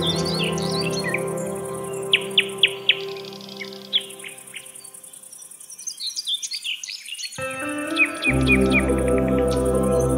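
Birds chirping in short, sharp falling calls over calm ambient music. The music fades almost away in the middle and comes back in about seven and a half seconds in, with a low bass joining shortly after.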